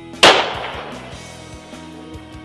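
A single .300 Ultra Mag rifle shot about a quarter second in: a sharp crack that rings out and fades over about a second, with background music underneath.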